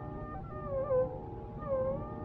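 Carnatic music in raga Mukhari: a melodic line, from voice or violin, traces two short gliding, ornamented phrases over a steady tanpura drone, in an old mono radio recording.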